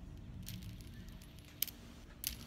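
Light clicks from a small object being handled in the hand close to the microphone, one about half a second in and another near the end, over a low handling rumble.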